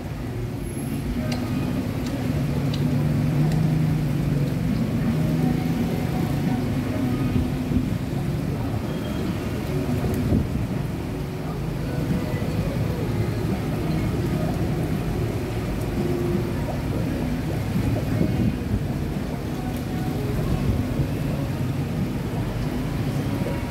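Steady background din of a restaurant: a low rumble of traffic with faint voices mixed in, and a few light clicks.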